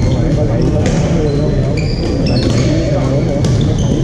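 Busy badminton hall: many voices talking at once, with sharp racket strikes on shuttlecocks several times and short high squeaks of shoes on the court floor.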